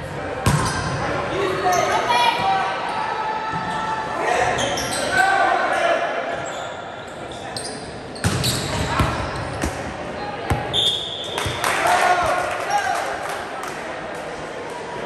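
Indoor volleyball rally in a large, echoing gym: the ball is slapped back and forth in sharp hits, with the loudest hits about eight seconds in, and players shout calls to each other.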